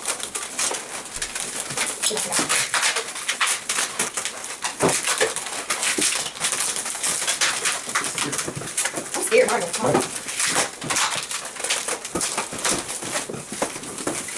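Latex modelling balloons being twisted and bent by hand, squeaking and creaking over and over in quick, irregular rubs.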